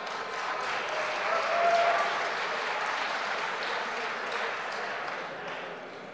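Applause from the members of a large parliamentary chamber, with voices calling out over it. The chair then treats the shouts as offensive remarks.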